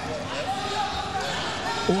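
Indistinct voices over a steady haze of venue noise during a grappling exchange on the cage floor.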